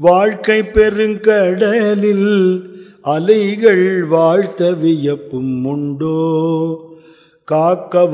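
A man singing a devotional verse in Carnatic style, with wavering, ornamented held notes, in phrases broken by short pauses about three seconds in and near the end.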